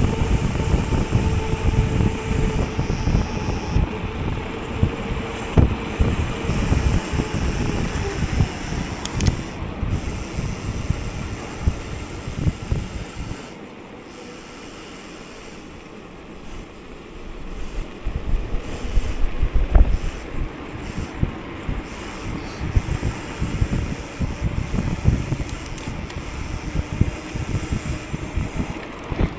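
Wind buffeting the microphone and the rumble of mountain-bike tyres on asphalt during a fast road descent, with a faint steady hum for the first several seconds. The noise drops quieter for a few seconds about halfway through, then comes back.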